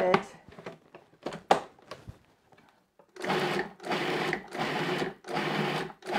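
Food processor with an S-blade pulsing a chunky veggie-burger mixture: about four short pulses less than a second apart in the second half, after a couple of sharp clicks.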